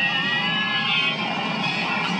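Soundtrack of a Japanese TV segment played back through a loudspeaker: a few thin high tones near the start, fading into an even rushing noise.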